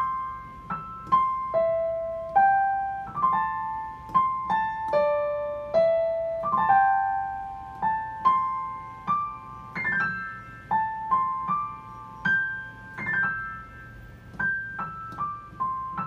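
A Yamaha digital piano playing a Chinese pentatonic melody with the right hand alone, in single ringing notes. Several notes are opened by a quick brushed run of grace notes, a sweep meant to sound like a guzheng.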